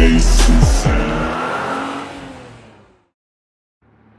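Music with a heavy beat, joined by a vehicle engine sound effect accelerating away; both fade out to silence about three seconds in.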